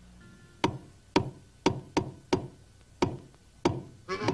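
A series of seven sharp wooden knocks at an uneven pace, each with a short ringing tail: a cartoon sound effect.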